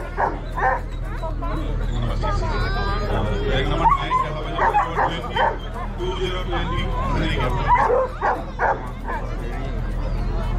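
Dogs barking and yipping in short, repeated barks over the chatter of a crowd.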